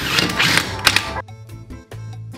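Impact wrench hammering on a differential's pinion nut through a 30 mm socket, in a few short bursts that stop a little over a second in.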